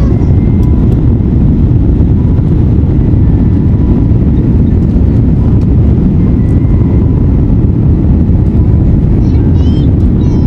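Loud, steady low rumble of a Boeing 787 Dreamliner's engines and airflow heard inside the cabin during the climb just after takeoff.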